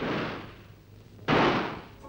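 Two pistol shots about a second and a half apart, each ringing out and dying away over about half a second on the shooting range.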